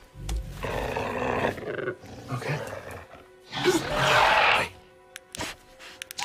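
Film velociraptor vocalizing: low, rough growls in the first two seconds, then a louder, higher call about four seconds in, with soft music underneath.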